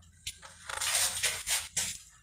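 Irregular rustling and scuffing noise, a quick run of short bursts, from a hand-held phone being moved about.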